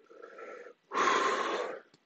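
A man breathing hard through his mouth against the burn of a Dorset Naga chili in his throat: a softer breath, then a louder, longer one about a second in, with a faint whistle in it.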